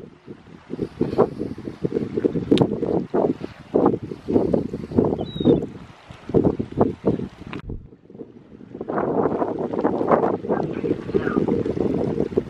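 Wind buffeting the microphone in uneven gusts that come and go, with brief lulls around two, six and eight seconds in.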